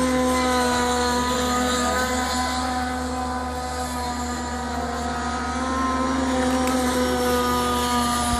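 Radio-controlled model boat's motor running at a high, steady pitch, slightly quieter in the middle and louder again near the end.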